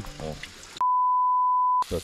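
A steady pure beep tone of about one second, starting a little under a second in, with all other sound cut out while it plays: an edit-inserted censor bleep.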